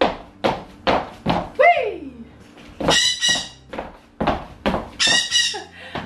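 High-heel footsteps on a hardwood floor: sharp heel clicks about two a second, broken by brief high-pitched sounds twice in the middle.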